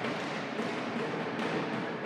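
Steady background din of a crowd in an indoor sports hall, with no distinct strikes standing out.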